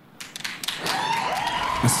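Studio audience clapping and cheering, swelling up from near quiet.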